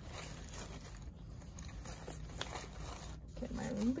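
Faint rustling and crinkling of wired ribbon and artificial greenery being handled and pressed onto a wreath, over a low steady room hum.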